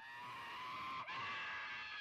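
A high-pitched scream from an old black-and-white film soundtrack: two long held calls of about a second each, over a thin hiss.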